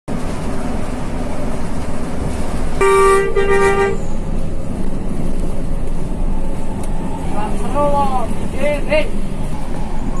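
Bus horn sounding a loud two-part blast about three seconds in, over the steady running of the bus's engine and road noise heard from inside the cab. A voice is heard briefly near the end.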